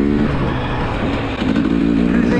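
Enduro motorcycle engine running steadily under throttle as the bike climbs a rough grassy slope.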